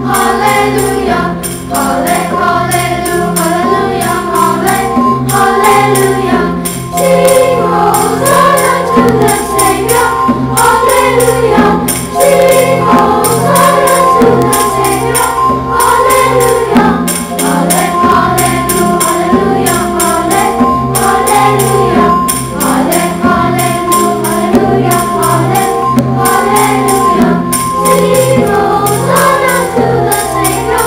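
Children's choir singing a hymn with held keyboard-like accompaniment and a steady, crisp percussion beat.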